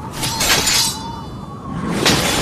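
Fight-scene sound effects: two loud bursts of mostly high-pitched noise, one in the first second and another starting near the end.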